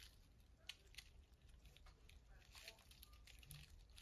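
Near silence, broken by faint, irregular little ticks and light scratches: a rat pup's claws scrabbling on chip bedding and the plastic tub floor.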